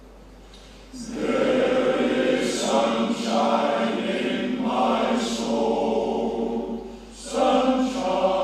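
A male voice choir singing in full chorus, entering about a second in after a quiet start. The singing pauses briefly near the end before the next phrase.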